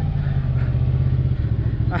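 Can-Am side-by-side UTV engine idling steadily, with a slight change in its note about a second and a half in.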